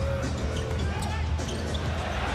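Basketball dribbled on a hardwood court, over steady arena background noise.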